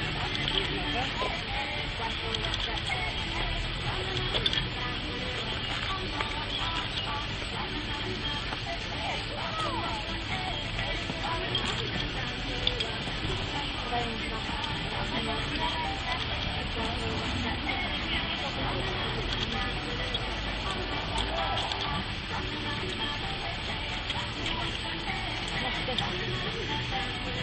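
Distant, indistinct voices of people around an outdoor field over a steady low background rumble.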